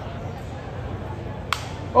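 Steady ballpark crowd murmur, then about one and a half seconds in a single sharp crack: a wooden baseball bat breaking as it hits a pitched ball.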